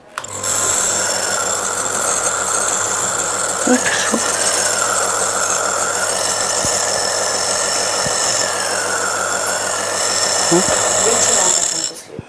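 An Omron CompAIR compressor nebulizer switched on and running: a steady electric compressor hum with a hiss of air, holding level, then stopping just before the end.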